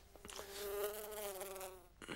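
Housefly buzzing close to the ear, a wavering hum that swells and then fades over about a second and a half.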